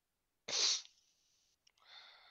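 A person's sharp burst of breath, like a sneeze, about half a second in, short and hissy. A fainter breathy hiss follows near the end.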